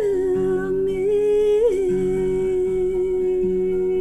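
A woman humming wordless held notes over acoustic guitar with a capo: the tune steps down just at the start, bends once a little under two seconds in, then holds one long steady note, while low guitar notes are picked about once a second beneath it.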